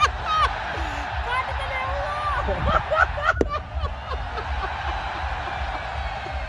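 Cricket players shouting and cheering on the field as a wicket falls: several short, wordless calls with sliding pitch, the loudest right at the start. A single sharp knock comes about three and a half seconds in, over a steady low rumble.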